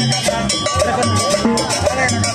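Live band playing upbeat dance music, with drums and sharp percussion strikes keeping a steady, even beat over bass and melody notes.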